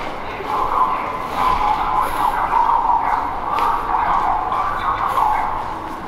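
Echoing background din of a large underground station concourse: an indistinct, steady midrange hum of distant activity that eases off slightly near the end.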